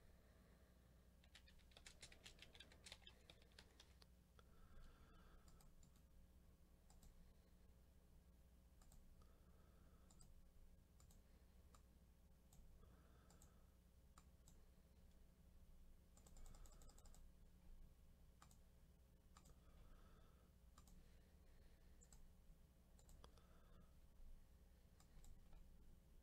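Near silence with faint computer keyboard typing and mouse clicks: a quick run of keystrokes about two seconds in and another around sixteen seconds in, single clicks in between, over a low steady hum.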